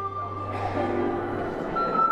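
Ensemble of soprano recorders holding one long high note, then moving up to a new note near the end, over a low sustained bass note.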